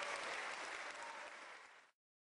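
Audience applause, a dense patter of many hands clapping that thins gradually and is cut off abruptly near the end.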